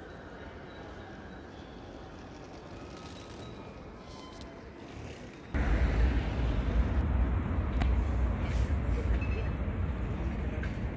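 Ambience of a busy railway station concourse, a steady hubbub of people. About halfway through it cuts off abruptly to much louder outdoor noise dominated by a low, fluctuating rumble of wind on the microphone.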